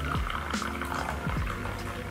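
Hot tea pouring in a thin stream from a ceramic teapot into a porcelain teacup, heard under background music.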